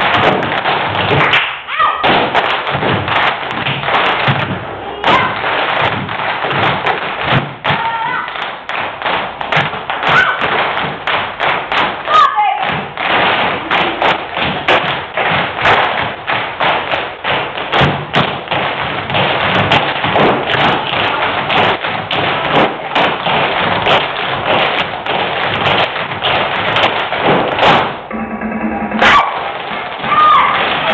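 Many tap shoes striking a stage floor in fast, dense rhythm: an ensemble tap routine over accompanying music. The tapping breaks off briefly about two seconds before the end.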